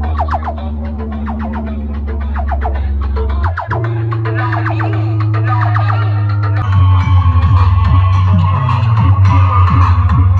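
Loud music played through a road-show sound system's banks of horn loudspeakers. A heavy, sustained bass note runs under fast, rapidly repeated beats, and the bass shifts pitch about three and a half seconds in and again near seven seconds.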